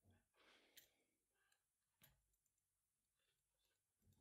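Near silence, with faint rustling and a couple of small clicks as nylon paracord strands are handled and pulled tight through a knot.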